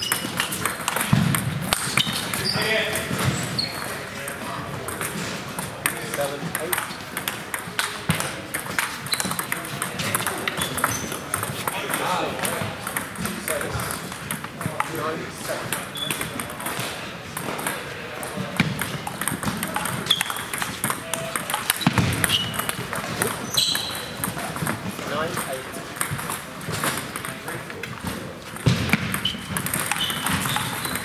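Table tennis rallies: the plastic ball clicking off bats and the table in quick, irregular exchanges, with indistinct voices in the background.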